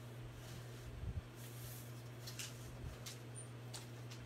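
Faint, scattered light clicks and rustles of craft supplies being moved about on a table, over a steady low hum.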